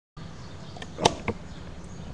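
Two sharp clicks about a second in, the first the loudest, over a steady low hum and background hiss.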